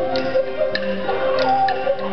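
Chinese funeral band music: a wavering melody over held, droning tones, with sharp wooden-sounding clicks keeping a steady beat about every half second.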